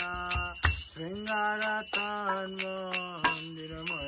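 Aarati hand bell ringing rapidly, with many strikes a second, over devotional singing and low drum beats.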